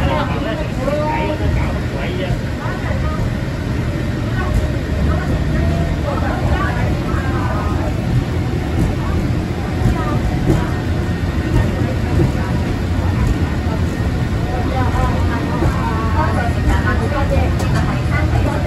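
Peak Tram funicular car running along its track, a steady low rumble heard from inside the cabin, with people talking over it.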